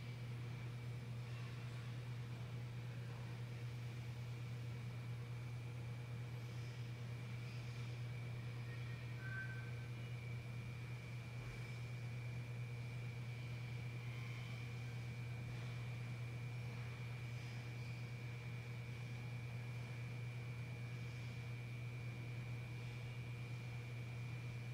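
Steady low machine hum with a faint, thin, high whine over it, unchanging throughout.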